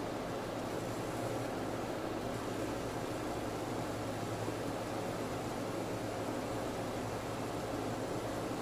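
Steady room tone: an even hiss with a low, constant hum underneath and nothing else happening.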